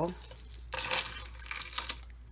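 Loose beads and charms rattling and shifting in a small round container as they are handled, a dry crackly clatter starting a little under a second in and lasting about a second.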